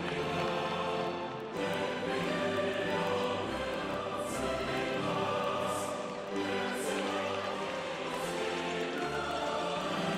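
Choir singing with orchestral accompaniment, a continuous piece of music with held notes.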